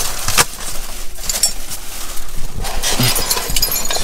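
Hands rummaging through dumpster trash: styrofoam, plastic wrap and cardboard rustling and crinkling, with several sharp knocks, the sharpest about half a second in and another at the very end.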